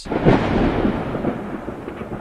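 A clap of thunder: it breaks suddenly, is loudest just after, then rolls on as a rumble that slowly fades.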